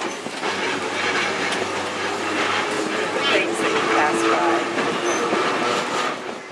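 Connecticut open-air electric trolley car rolling along the track, heard from aboard: steady running noise of wheels on rail with frequent clicks and knocks from the rail joints.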